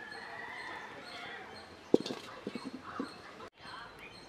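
A metal cooking pan set down on a small wood-fired stove: one sharp clank about halfway through, followed by a few lighter knocks and rattles.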